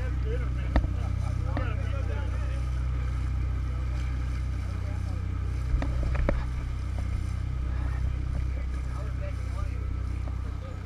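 Sportfishing boat's inboard engines running with a steady low drone, with a few short sharp knocks about a second in and around six seconds.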